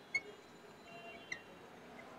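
Marker tip squeaking on a glass writing board as a number is written: two short, high squeaks, one just after the start and one a little past the middle, over faint room hiss.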